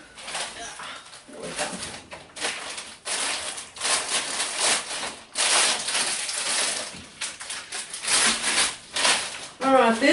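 Rustling and crinkling of plastic-wrapped frozen food packages being handled, in a run of rustles each lasting up to about a second.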